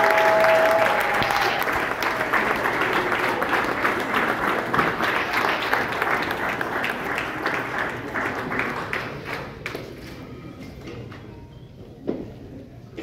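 Banquet crowd applauding: dense clapping from many people, strongest at first, thinning out and dying away over the last few seconds.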